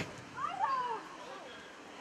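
A sharp knock right at the start, then a short high-pitched shout from a young footballer that bends up and down in pitch about half a second in, over faint field noise.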